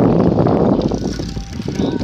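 Wind buffeting the microphone of a phone carried on a moving bicycle, mixed with tyre noise on the street; loud at first and easing off after about a second.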